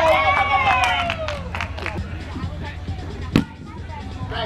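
A long wordless shout from a player, falling in pitch, over steady outdoor field rumble. A few light knocks follow, then one sharp thump a little before the end.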